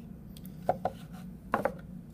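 Light plastic clicks and knocks of a plastic model railway building kit being handled and set down on a table: a few sharp taps in two small clusters, near a second in and again at about a second and a half.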